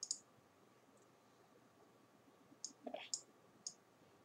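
A few computer mouse clicks against near silence: one at the start, then three about half a second apart near the end.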